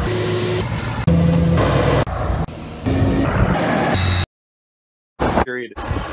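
Short clips of tractor engine noise spliced one after another, the sound changing abruptly at each cut and stopping suddenly about four seconds in; a voice comes in near the end.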